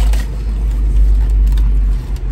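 Steady low rumble inside a stationary car's cabin from the idling engine.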